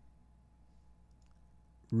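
Near silence: faint room tone with a thin steady hum and a few very faint clicks. A voice starts again right at the end.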